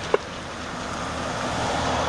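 A road vehicle driving past close by, its tyre and engine noise building through the second half. There is a short click just after the start.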